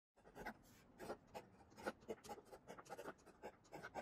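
Faint scratching of a pen on paper: short, irregular strokes, a few a second.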